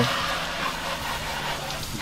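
Garden hose spray nozzle jetting water onto a motorcycle's frame and rear wheel: a steady hiss of spray spattering on metal, plastic and tyre, over a steady low hum.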